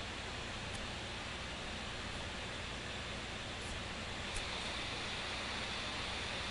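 Steady hiss of the recording's background noise, with a couple of faint short ticks.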